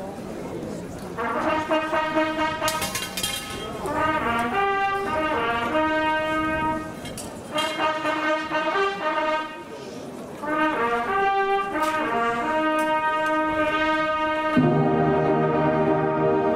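Massed brass of a wind band, trombones and trumpets, playing a slow ceremonial passage in held chords, phrase by phrase with short breaks between. Near the end the full band comes in with deeper low brass.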